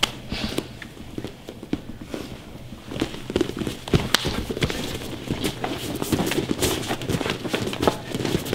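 Feet scuffing and stamping on gym mats as two men grapple in a clinch, with irregular short thumps and shuffles. The sounds are sparse for the first couple of seconds, busier from about three seconds in, and one sharp thump comes about four seconds in.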